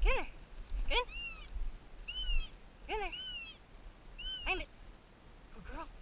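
A bird dog yipping and whining in short excited cries while it hunts through a brush pile: about six cries roughly a second apart, each rising then falling in pitch, some lower yips running straight into higher whines.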